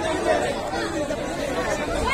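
Indistinct chatter of several people talking around the camera, with no clear words.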